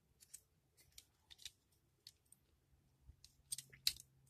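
Faint clicks and taps of the hard plastic parts of a Kotobukiya D-Style GaoFighGar model kit as they are handled and pegged together. A scattering of small, separate clicks, with the sharpest ones near the end.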